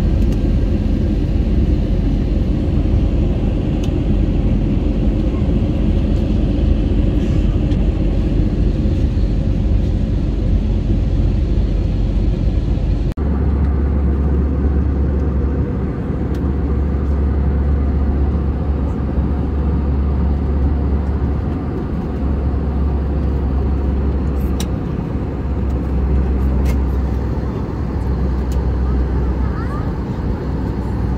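Airliner cabin noise: the steady rumble and rush of the engines and airflow, heard from inside the cabin at a window seat. About thirteen seconds in, the low rumble changes abruptly.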